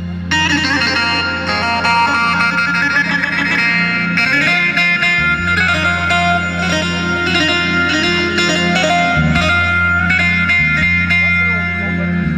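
Korg Pa800 arranger keyboard playing an instrumental passage of a Turkish folk dance tune (oyun havası): a quick plucked-string-like lead melody over steady held bass notes.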